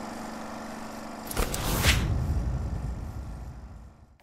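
Logo transition sound effect: a steady electronic hum, then about a second and a half in a sweeping whoosh into a deep boom that fades out over the next two seconds.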